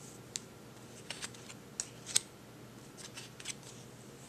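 Poker chips clicking against each other as they are handled: a few faint, sharp clicks at irregular intervals.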